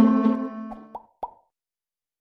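Background piano music ending on a held chord that fades out, followed by two short plop sound effects about a second in, then silence.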